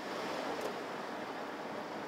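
Steady road noise of a car driving: an even rushing hiss.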